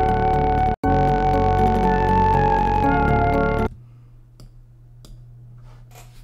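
A trap melody loop playing back from Logic Pro, layered piano, bass, synth and flute parts, with a brief gap just under a second in. The playback stops a little past halfway, leaving a faint steady low hum and a few faint clicks.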